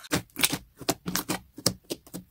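White slime pressed and poked with the fingertips, giving a quick irregular run of sharp clicks and pops, about four a second.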